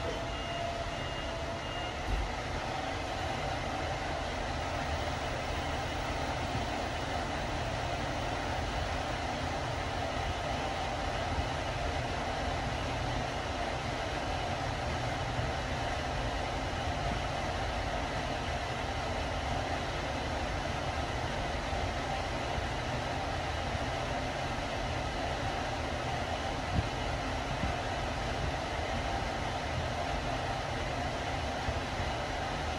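Hitachi machine-room-less passenger lift car travelling down its shaft at 2.00 m/s: a steady rumble and rush of air with a steady tone that rises a little about two seconds in, as the car gets up to speed.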